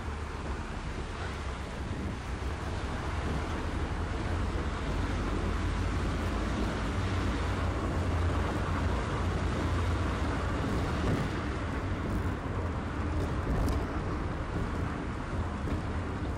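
Skoda Felicia pickup's 1.3-litre petrol engine and tyre noise while driving slowly, heard from inside the cab: a steady low rumble that grows a little louder in the first several seconds.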